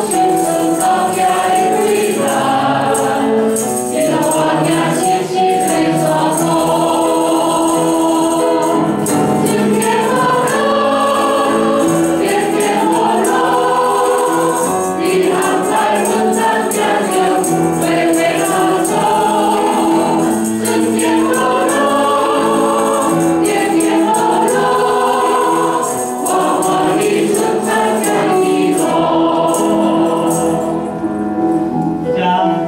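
A hymn sung in Mandarin by a small group of mixed male and female voices on microphones, with piano accompaniment, in steady held phrases.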